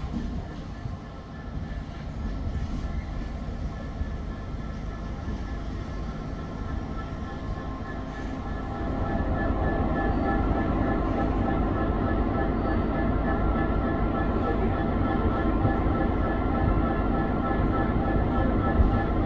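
DB Cargo Class 66 diesel locomotive 66128, its two-stroke EMD V12 engine running steadily as it approaches along the platform line. The engine drone grows louder about halfway through as the locomotive draws near.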